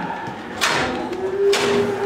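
Two sudden bangs about a second apart, with a steady held tone starting shortly before the second.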